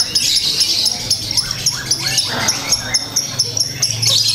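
Lovebird chattering: a fast run of high chirps repeated about four times a second, with a few short sliding notes among them, over a steady low hum.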